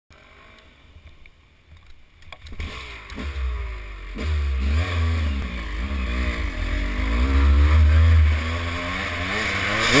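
Dirt bike engine heard from the rider's helmet, quiet at first and then coming in about two and a half seconds in, its pitch rising and falling again and again as the throttle is worked up a rocky trail. There is a heavy low rumble underneath and a few sharp knocks along the way.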